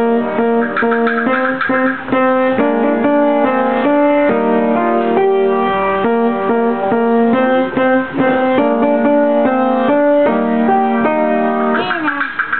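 Upright piano playing a simple tune: single melody notes at about two to three a second over lower notes, ending right at the close.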